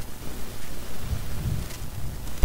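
Low, uneven rumbling noise swelling and fading about once a second, picked up by the recording microphone.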